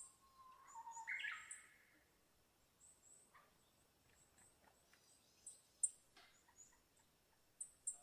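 A short animal call about a second in, a slightly falling tone that breaks into a harsh, higher squawk, over faint high chirping. A few sharp clicks come later, the loudest a little before the six-second mark.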